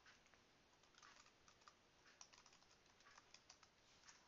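Faint typing on a computer keyboard: a run of light key clicks at an uneven pace.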